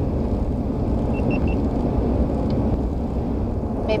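Steady low rumble of road and engine noise from a vehicle cruising on a paved highway, heard inside the cab. Three quick, faint high beeps sound about a second in.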